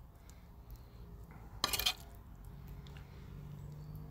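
Faint clinks of a metal spoon against a fork while barbecue beef mince is spooned onto a hot dog in a bun, with one louder short clatter a little under two seconds in.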